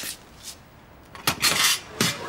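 Kitchen clatter: a few sharp knocks, then a busier rattle about a second and a half in, like dishes or kitchenware being handled.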